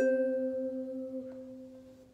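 Ukulele chord strummed once and left to ring, its notes fading steadily away.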